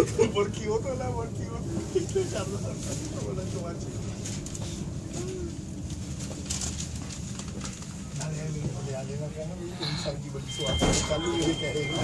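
Carriage interior of a GWR Class 387/1 electric train at the platform: a steady low running rumble under the background chatter of passengers. Near the end a steady high beep starts.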